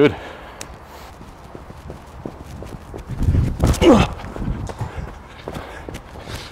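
Footsteps of a cricket fast bowler on artificial turf, picked up close by a microphone he is wearing: quiet steps at first, then heavier, louder footfalls as his run-up starts about halfway through.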